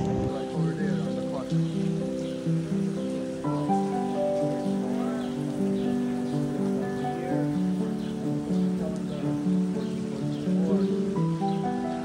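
Background music: a slow melody of long, held notes that change pitch every second or so.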